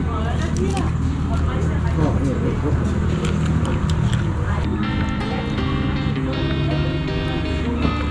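Background voices over a steady low hum, then music with long held notes comes in about halfway through.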